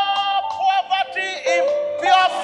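Worship singing: a high voice holding long notes that bend and slide, with instrumental accompaniment underneath.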